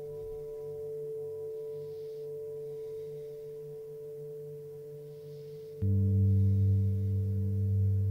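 Singing bowls ringing: a sustained tone with overtones slowly fades. About six seconds in, a louder, deeper bowl is struck and rings on.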